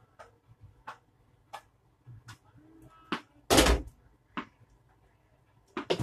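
A tennis ball hit back and forth with rackets, a sharp knock with each stroke about every two-thirds of a second. About three and a half seconds in comes one much louder, deeper thump.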